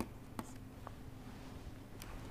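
Faint taps and scratches of a stylus writing on a tablet, with a few light clicks, over a steady low electrical hum.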